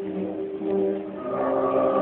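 Church choir singing held chords in a reverberant church, a new, brighter chord entering about one and a half seconds in.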